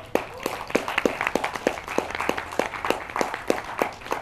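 An audience clapping: many individual hand claps, distinct and irregular, several a second.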